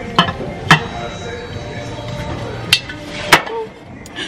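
Lidded ceramic Santa-head jar clinking as it is handled: its ceramic lid knocks on the jar and the jar is set down on a glass shelf. There are four sharp clinks, two near the start and two in the second half.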